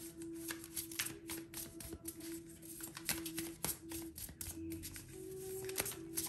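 A tarot deck being shuffled by hand: a run of light, quick papery clicks. Under it, soft background music holds a steady note.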